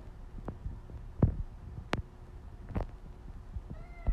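A few soft, low thumps, then near the end one short meow from a house cat pinned under a dog.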